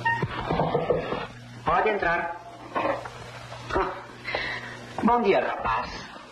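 Short spoken phrases with pauses between them, over a steady low hum.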